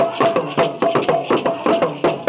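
Lively percussive music: voices singing over shaken rattles and hand claps that keep a quick, even beat of about four strokes a second.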